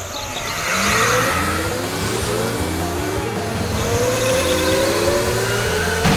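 Several go-karts accelerating away from a race start, their motors rising in pitch one after another and overlapping.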